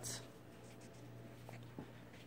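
A faint steady low hum, with light rustling handling noise and two small ticks near the end.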